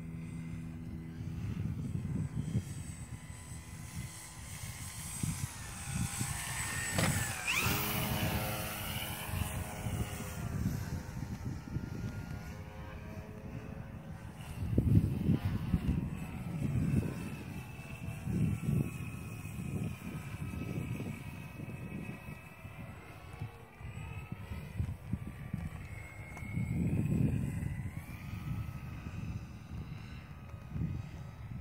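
Electric motor and propeller of a Dynam Albatros radio-controlled model plane flying past, its whine sliding up and down in pitch as it comes and goes, loudest in a close pass about seven to eight seconds in. Gusts of wind on the microphone rumble underneath throughout.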